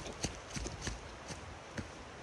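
Footsteps on a rocky trail covered in dry leaves: irregular hard footfalls on stone with leaf crunch, several in the first second and fewer after. A steady faint rushing noise runs underneath.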